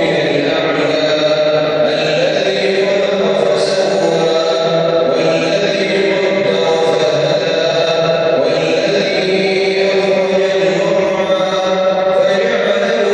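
A man's amplified voice chanting in Arabic over the mosque's loudspeakers, with long held notes in a heavily reverberant prayer hall.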